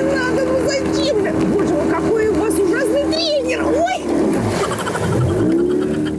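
A motorboat's engine running at speed with a steady drone; about four seconds in its note dips, then rises again near the end. A person's voice rises and falls over it.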